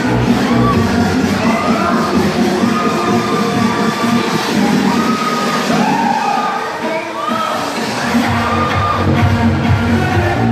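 Riders screaming on a spinning funfair thrill ride, several drawn-out shrieks one after another, over loud electronic dance music from the ride's sound system. The music's bass drops out for a few seconds in the middle, then returns.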